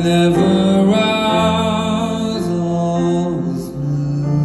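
Male voice singing a long, wavering held note, without clear words, over grand piano.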